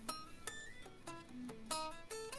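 Electric guitar picking a slow single-note lick, about six notes played one at a time, each left to ring briefly before the next.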